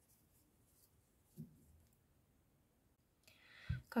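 Faint soft rubbing and light ticks of a metal crochet hook drawing loops through thick yarn while double crochets are worked. Near the end, a breath and the start of a woman's speech.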